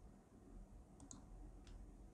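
Near silence: faint room tone with three small clicks, two close together about a second in and one more shortly after.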